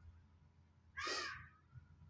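One short, harsh bird call about a second in, lasting about half a second.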